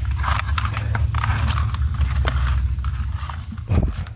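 A hand rummaging in a plastic bucket of live eels and shallow water: wet slithering, scrapes and knocks against the bucket, with a louder thump near the end, over a steady low rumble.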